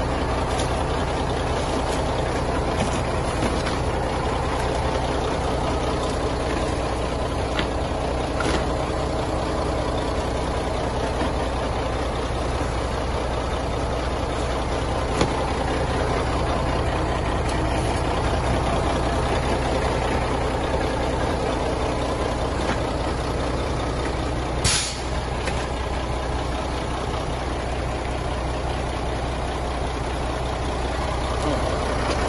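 Heavy truck engine idling steadily, with a short burst of hiss about 25 seconds in.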